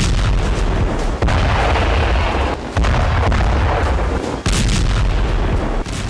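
A run of explosion booms over a deep, continuous rumble. New blasts break in sharply about a second in, near the middle and again about three-quarters through.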